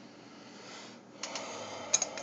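Light metal clicks and rattles as a hand takes hold of the wire bail handle on a stainless Corny keg's lid, starting about a second in, with a sharper click near the end.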